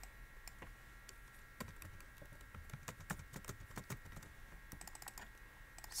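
Faint, irregular clicking of a computer keyboard and mouse as an equation is edited on screen.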